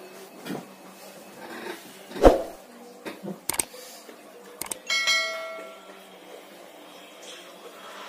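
Subscribe-button overlay sound effects: a thump about two seconds in, a few sharp mouse clicks, then a bright bell ding about five seconds in that rings out for about a second.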